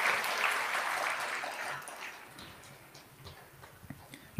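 Audience clapping that dies away over about two and a half seconds, leaving a very quiet stretch with a few scattered claps near the end.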